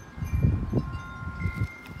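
Wind chimes ringing, a few clear tones held on, over low rumbling on the microphone through most of the first second and a half.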